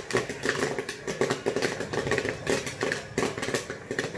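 Popcorn machine running: irregular sharp pops and clicks, typical of kernels popping in the kettle, over a steady hum from the machine and its gas burner.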